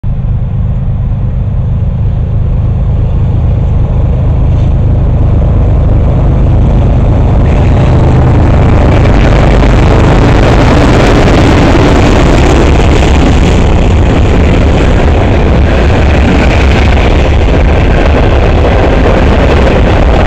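Freight train led by BNSF ES44C4, BNSF C44-9W and NS SD70M-2 diesel locomotives approaching and passing close by, very loud. The deep rumble of the diesel engines builds first. From about seven seconds in, the rush and clatter of steel wheels on rail takes over as the locomotives go by and the freight cars follow.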